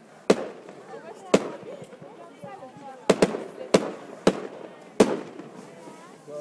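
Aerial firework shells bursting: about seven sharp bangs at uneven intervals, two in quick succession about three seconds in. Voices in the background.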